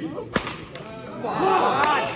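A single sharp crack of a badminton racket smashing the shuttlecock, followed about a second later by a loud shout.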